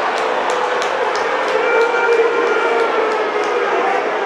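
Football crowd cheering a goal: a loud, steady roar of voices, with sharp claps throughout and voices holding a note through the middle.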